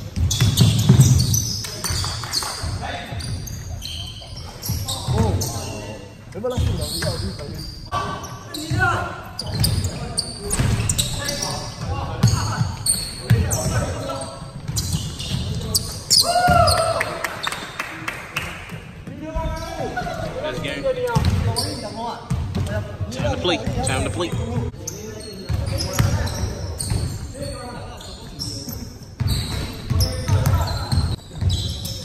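A basketball bouncing repeatedly on a hardwood gym floor during a pickup game, a run of short thuds, with indistinct players' voices in a large indoor hall.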